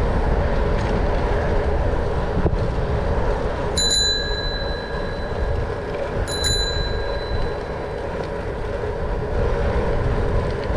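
A bicycle bell rung twice, about two and a half seconds apart, each ring fading over about a second, over steady wind and rolling noise from the ride.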